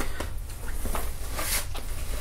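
Light handling noise: soft rustling and a few small taps as a hand works at the powder trickler, over a steady low hum.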